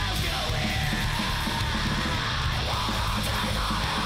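Hardcore/crust punk band recording playing, with yelled vocals over dense, continuous music.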